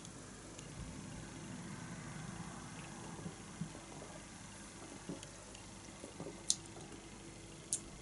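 Quiet sips and swallows of beer from a glass, with a few small clicks and taps scattered through, over a faint steady room hum.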